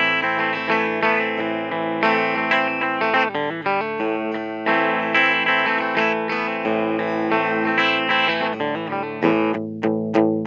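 2019 Gibson Explorer Tribute electric guitar played through an amplifier on its bridge humbucker with a clean tone. Chords are strummed and left ringing, changing about every second, and then come quick single picked strokes near the end.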